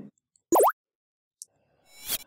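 A short synthetic sound effect from a slide animation, about half a second in, with a quick swooping pitch glide, followed by a faint high blip and a click near the end.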